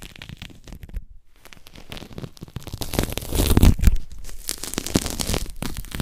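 Dubbed-in ASMR sound effect of crinkly tearing and crackling, like dry skin being peeled, laid over a leopard gecko's shed skin being pulled off its leg. It comes as a dense run of small crackles, briefly quieter about a second in and loudest a little past the middle.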